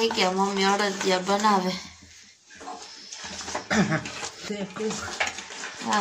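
Hands mixing thick adadiya pak mixture in a stainless steel bowl, with soft scraping and small knocks against the steel, under a woman's voice. The voice is heard in the first two seconds and again a little past the middle, with a short lull just after two seconds.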